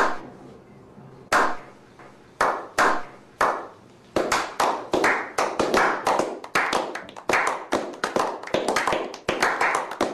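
A slow clap from a small group: single hand claps about a second apart at first, then more hands join in about four seconds in and the clapping quickens into steady applause.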